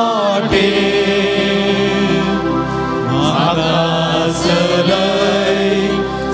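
A devotional hymn being sung over held, sustained chords, the melody gliding between notes.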